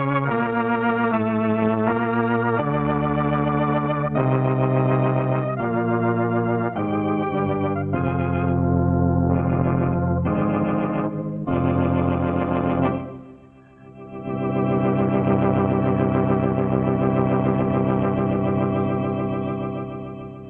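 Organ music for a closing cue: a run of held, wavering chords that change every second or so, a brief break about thirteen seconds in, then one long chord that fades near the end.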